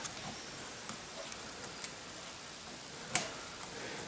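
Parts of a new chrome kitchen faucet being handled at the spout, with faint small ticks and one sharp click about three seconds in.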